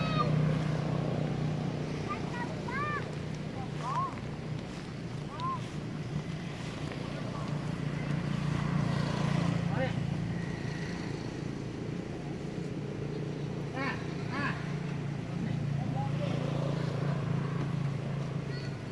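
A steady low engine-like hum runs under brief high squeaky calls that rise and fall. A few calls come in the first six seconds, a quick pair about fourteen seconds in, and one near the end.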